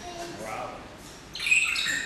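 A bird calling in an aviary: a loud, high-pitched call starts about one and a half seconds in and runs on, over faint people's voices.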